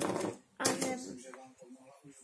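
A child's voice speaking briefly, with faint light knocks of a kitchen knife on a wooden cutting board as leaves are cut into strips.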